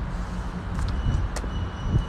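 Low, uneven rumble of wind buffeting a phone's microphone, with one light click partway through.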